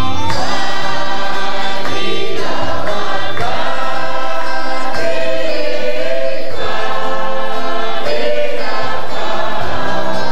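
A church congregation singing a gospel worship song together as a chorus, in loud phrases of a second or two that follow one another without a break.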